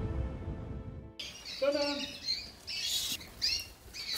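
Music fades out, then caged canaries chirp and call in short high bursts, with a broom sweeping across a concrete floor in brief strokes.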